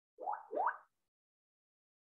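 Two quick upward-gliding blips in close succession, typical of a computer notification sound.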